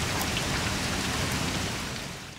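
Steady rain falling on pavement, a continuous patter that eases off slightly near the end.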